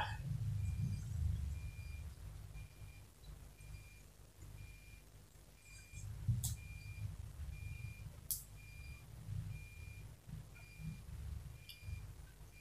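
Faint high electronic beeps repeating evenly, a little more than one a second, over soft low rustling of fabric being handled. Two sharp clicks come about halfway through.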